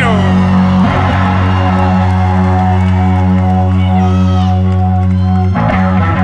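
Rock band playing live: a sung note slides down at the start, then the band holds one long sustained chord over a steady low bass note. About five and a half seconds in, the band breaks back into rhythmic playing.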